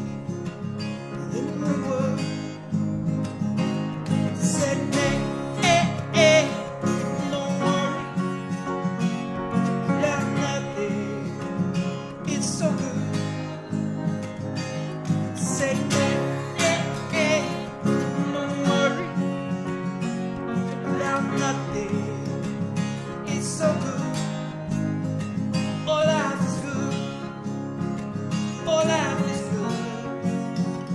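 Acoustic guitar played in a country-style song, a passage with no sung words.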